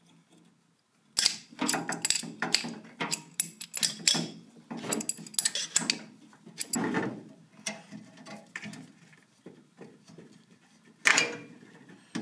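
Black iron pipe fittings and a brass gas valve clinking and scraping as they are fitted together and tightened with a pipe wrench and tongue-and-groove pliers. There are irregular metal clicks and scrapes from about a second in, with a louder one near the end.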